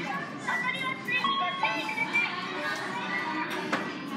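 Restaurant background din: music playing with a chiming melody over people and children talking.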